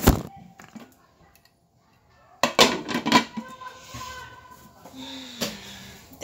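Knocks and clinks of a glass slow-cooker lid being set on the pot: one clatter at the start, then a cluster of clinks with a little ringing about two and a half seconds in.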